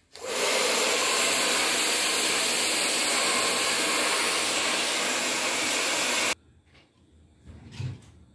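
Handheld hair dryer blowing on hair. It comes on sharply just after the start, runs at a steady level for about six seconds, then cuts off suddenly.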